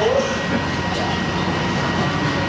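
Steady, even room and equipment noise with a low hum and a thin high steady tone, as a band stands idle between songs; a short vocal sound right at the start.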